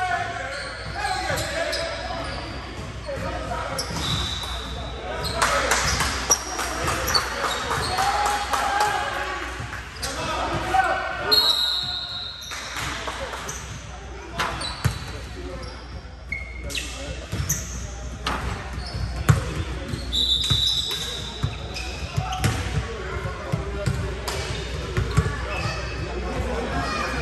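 Basketball dribbled and bouncing on a hardwood gym floor during a game, with several brief high sneaker squeaks and players' voices, echoing in a large hall.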